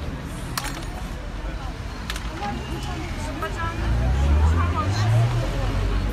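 Indistinct voices of people at the roadside, with a low vehicle engine rumble that grows louder about four seconds in. A couple of sharp clicks sound in the first two seconds.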